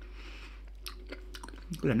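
Mouth sounds of chewing and sucking on hard salty liquorice candy, with a few short wet clicks; a man's voice begins near the end.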